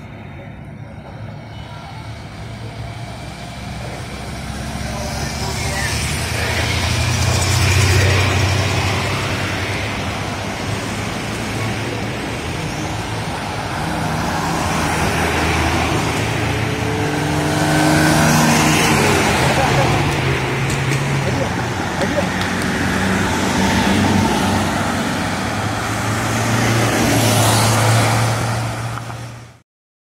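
Road traffic: motor vehicles passing one after another, engine and tyre noise swelling loud and fading several times, with voices mixed in.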